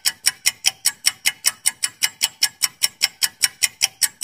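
Countdown-timer sound effect: rapid, even clock-like ticking, about five ticks a second, counting down the seconds before a quiz answer is revealed.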